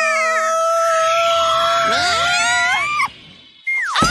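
Cartoon sound effects over music: one long held pitched note, with whistle-like slides rising and falling over it, as batter flies off a muffin tray. It breaks off about three seconds in, and a sudden falling slide follows near the end.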